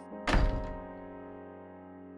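A single deep hit about a quarter second in, with a musical chord ringing on after it and slowly fading away: a closing music sting.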